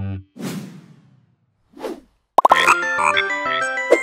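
Logo-animation sound effects: the background music cuts off just after the start, then come a whoosh about half a second in and a shorter whoosh near two seconds. A short, bright jingle of quick plucked notes with plop sounds follows, running into the brand's logo sting.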